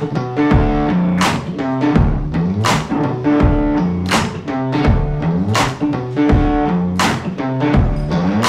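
Instrumental intro of a swamp-blues rock riff played on a Gibson semi-hollow electric guitar, a low repeating figure. A drum hit lands about every second and a half, giving a slow half-time beat.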